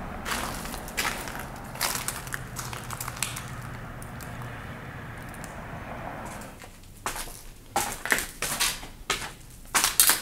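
Footsteps crunching over debris and grit on a floor, heard as irregular sharp crunches. They are sparse over a steady hiss at first, then louder and more spaced out over the last few seconds.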